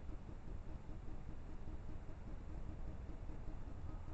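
Faint, steady background rumble and hiss from a night-vision trail camera's microphone, with no distinct event.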